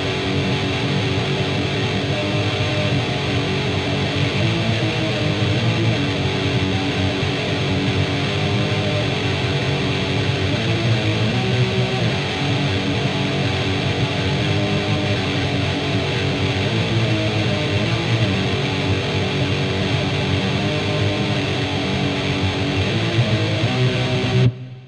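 Distorted electric guitar tremolo-picking a riff of low power chords on the bottom two strings, a continuous fast-picked drone whose chord shifts every second or so.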